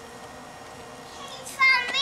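A young child's high-pitched voice calling out loudly from about one and a half seconds in, its pitch sliding up and down. Before it there is only a faint steady background.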